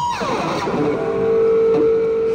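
Electric guitar: a held, wavering high note slides steeply down in pitch, then a single steady note rings on, swelling slightly.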